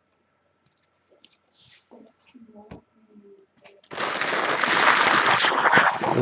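A foil trading-card pack crinkling and rubbing right against the microphone. It starts suddenly and loudly about four seconds in, after a few faint clicks of cards being handled.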